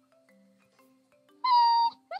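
A cat meowing once, a short high-pitched meow about one and a half seconds in, over faint background music.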